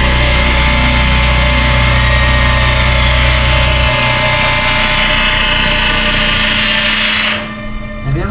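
Loud, dense, noisy drone of horror-trailer sound design, with steady tones running through it and a deep low hum that drops away about four seconds in. It stops abruptly about seven and a half seconds in.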